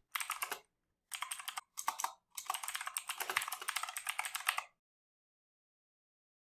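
Rapid typing on a computer keyboard, keys clicking in three quick runs with short pauses between, stopping a little over a second before the end.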